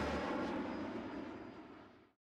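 Cirrus Vision SJ-50 single-engine personal jet flying away, its engine a steady rush that fades steadily out over about two seconds.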